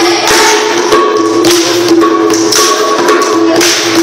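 Loud traditional Dangi folk dance music: a held, droning melody over steady jingling percussion.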